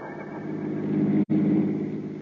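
Old-time radio sound effect of a car driving: a steady engine hum that grows slightly louder, broken by a split-second dropout in the recording a little over a second in.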